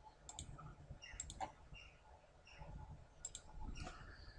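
A few faint, short computer mouse clicks, spaced irregularly, as points are placed to draw a sketch slot.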